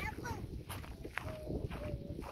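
Faint voices in short fragments over a steady low rumble of wind on the microphone.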